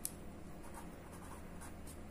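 Marker pen writing on paper: faint scratchy strokes, with a light tap as the tip meets the paper at the start.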